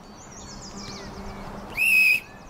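Faint outdoor bird chirps. Near the end comes one loud, steady blast of a sports whistle, blown to start the game.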